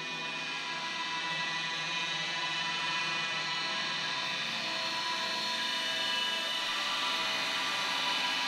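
A live band's sustained drone of many held tones with a hissing wash, swelling slowly louder as a song's intro builds.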